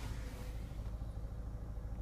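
Land Rover Freelander 2's 2.2-litre four-cylinder diesel idling, heard inside the cabin as a low, steady rumble.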